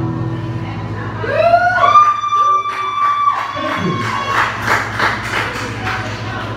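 Small audience cheering: a long whoop that rises and then holds steady for about two seconds, followed by a short burst of scattered clapping.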